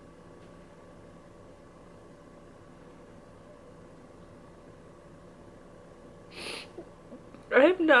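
A woman crying: quiet room with a faint steady hum for about six seconds, then a sharp sniff, and near the end a wavering, tearful voice breaking into a word.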